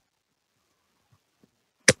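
Near silence on a gated online-meeting audio feed, broken by a single short click near the end.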